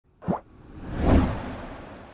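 Intro-animation sound effects: a short pop that drops in pitch about a third of a second in, then a whoosh that swells to a peak about a second in and slowly fades away.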